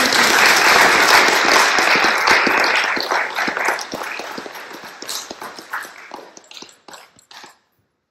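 Audience applauding, loudest over the first three seconds, then thinning out to scattered claps and stopping shortly before the end.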